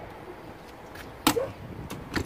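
Travel trailer's exterior storage compartment door being swung shut: one sharp slam a little past a second in, then a lighter click near the end as the latch is handled.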